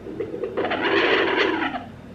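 Sonoline B handheld fetal doppler's speaker giving a loud burst of scratchy static and whooshing for about a second as the probe is moved over the lower belly, still searching without a heartbeat locked in.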